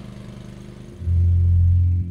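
A small lawnmower engine running steadily with a low pulsing hum. About a second in, a loud, deep synthesizer bass note comes in over it.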